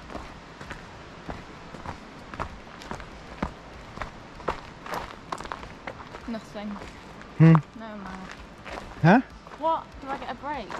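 Footsteps of runners on a gravel forest path, about two a second. From about six and a half seconds in come a few short wordless voice sounds, the loudest about seven and a half seconds in and a rising one near the end.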